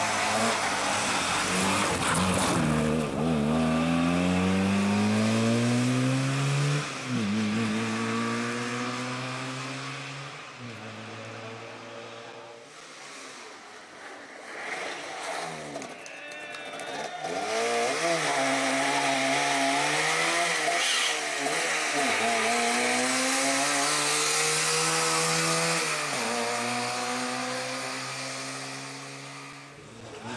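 Trabant P60 rally car's two-stroke two-cylinder engine revving hard under acceleration. Its pitch climbs in each gear and drops at each upshift, about every three to four seconds. It fades for a few seconds midway, then comes back close with more rising runs through the gears.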